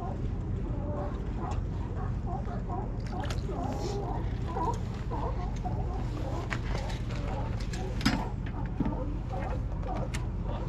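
Steady low background hum with faint wavering calls above it and a few sharp knocks, the loudest about eight seconds in.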